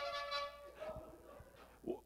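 A horn, the 'trumpet' called for in the service, blown in one held, steady note lasting about a second, followed by a shorter, fainter note.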